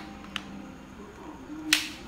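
Plastic clicks from handling a smartphone and its accessories: a faint tick just under half a second in, then one sharper click near the end.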